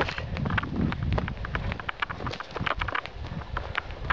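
Quick footsteps of a person hurrying along a forest trail over dry leaf litter and soil: a fast, irregular run of crunches and thuds. Low rumble from the handheld camera jostling with the movement runs underneath.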